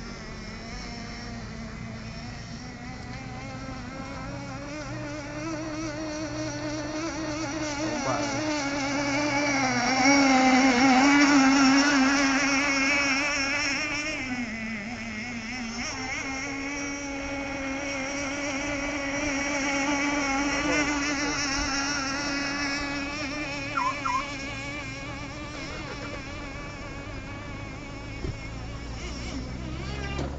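Small 3.5 cc two-stroke nitro engine of a radio-controlled boat running at high revs: a high, buzzing whine whose pitch wavers as the boat runs across the water. It swells loudest about ten seconds in as the boat comes closer, then settles back.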